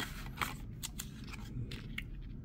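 Light handling of a paper user manual against its thin cardboard box: a few soft scrapes and small ticks.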